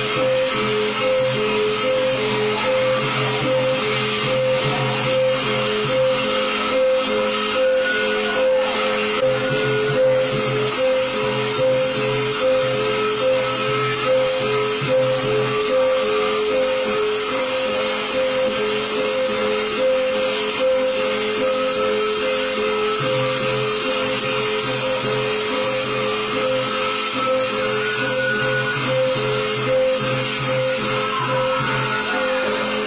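Karenni traditional ensemble: two hand-held gongs, one higher and one lower in pitch, struck alternately in a steady, even rhythm, over a long wooden drum that beats in stretches, with a continuous metallic rattle on top.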